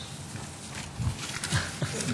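A person's short breathy chuckle into a microphone, a few quick snorts about a second in, over the low room noise of a council chamber.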